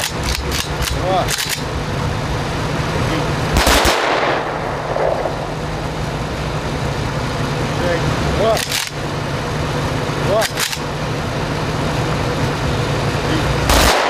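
Sounds of battle: a quick burst of gunfire at the start, then single heavy shots spaced several seconds apart, the loudest about four seconds in, over a steady low rumble.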